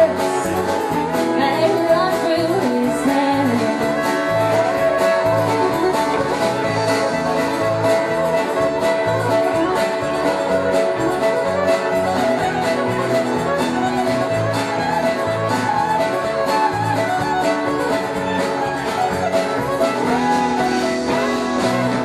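Live country band playing a steady-beat number: fiddle over strummed acoustic guitar, electric guitar, bass and drums.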